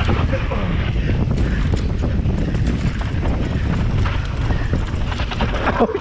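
Electric mountain bike rattling and clattering as it rides fast over a rough dirt singletrack, with a steady low rumble of tyre noise and wind on the microphone and many small knocks from the bumps. A short exclaimed "oh" comes at the very end.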